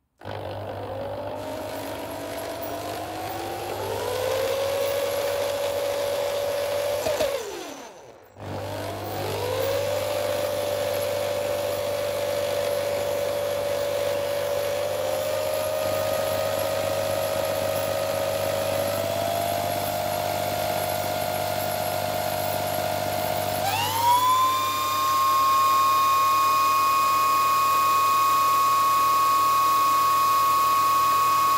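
Corded Black & Decker drill spinning an unloaded wind turbine generator's shaft through its chuck. Its whine rises as it spins up, stops briefly about eight seconds in, then restarts and climbs in small steps. About 24 seconds in it jumps to a higher, louder pitch and holds steady, the turbine now near 1,800 rpm.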